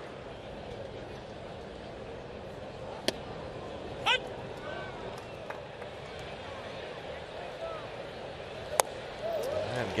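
Ballpark crowd murmur with scattered faint voices. Near the end comes a sharp pop of a pitched baseball into the catcher's mitt, with a fainter pop about three seconds in.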